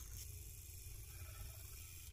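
Faint, steady whirr of a battery-powered handheld milk frother whisking honey, instant coffee and water in a glass cup.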